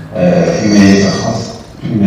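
A man speaking into a cluster of microphones, his voice loud and close, with a short pause a little before the end.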